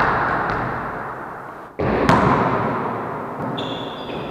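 Volleyball play in an echoing sports hall: the ball being struck, with a sudden loud hit just before two seconds in that rings on in the hall's long echo.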